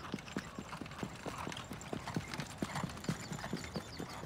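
Hoofbeats of a trotting harness horse pulling a sulky on a dirt track: a steady run of sharp beats, about four a second.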